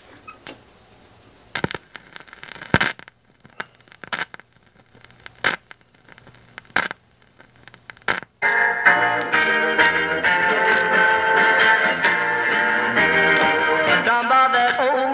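A 7-inch vinyl single on a turntable: scattered loud clicks and pops as the stylus is set down and runs through the lead-in groove. About eight seconds in, a rockabilly band's guitar intro starts abruptly and plays on over light surface crackle.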